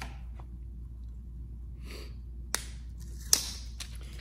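Two sharp plastic clicks as a small portable SSD and its parts are handled and pulled from a plastic clamshell package, the second click the louder, over a low steady hum.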